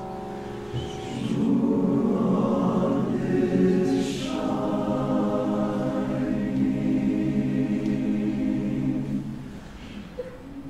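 Men's chorus singing slow, sustained chords, the sound swelling about a second in and fading away near the end of the phrase.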